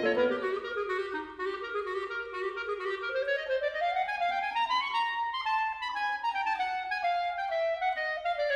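A clarinet playing an unaccompanied melodic line in a classical-jazz piece, the piano silent. The line moves in steps, climbing steadily for the first five seconds or so, then easing back down.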